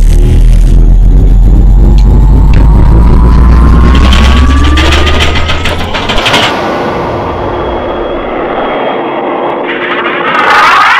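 Spacecraft sound effects: a loud, deep engine rumble with a rising whine, as of a ship powering up and thrusting. A burst of crackling comes about five to six seconds in, after which the rumble falls away and a quieter steady hum with thin tones remains.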